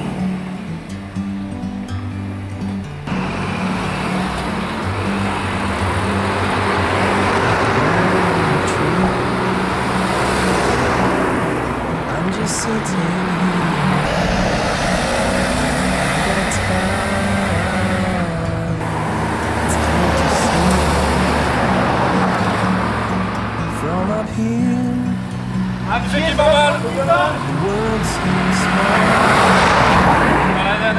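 Cars and a van passing on a street, each swelling and fading, over a steady background music track.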